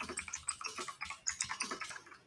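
Computer keyboard typing: a quick, steady run of keystroke clicks.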